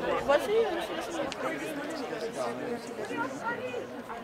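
Indistinct chatter of several people talking at once, voices overlapping, a little louder in the first second.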